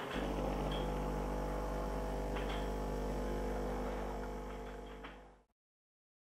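Capsule espresso machine switched on with a click, its pump then running with a steady electric hum while it brews. The hum fades out about five seconds in.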